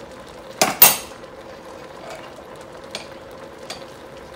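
Shrimp shells sizzling quietly in oil in a stainless steel stock pot, with a loud double clank of kitchenware just under a second in and a couple of small ticks later.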